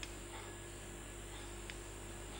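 Faint plastic clicks of a servo connector being pushed at an RC receiver's aileron port, over a steady low hum. The connector won't seat because of a plastic tab on it.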